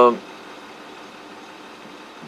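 A man's drawn-out 'um' trails off just after the start, then a steady low engine noise of a pickup truck idling, heard from inside the cab.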